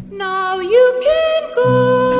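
Recorded music from a vinyl LP: a melody line of long held notes that slide up from one pitch to the next. The low backing chords come back in about three-quarters of the way through.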